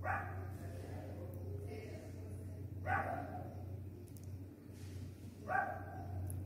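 A dog barking three times, single barks about three seconds apart, over a steady low hum.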